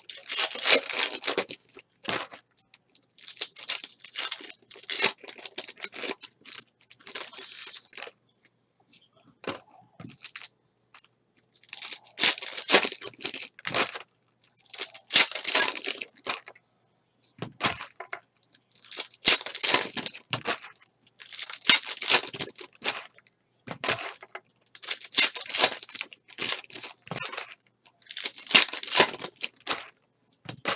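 Foil trading-card pack wrappers being torn open and crinkled by hand, in repeated bursts of crackly tearing every second or two.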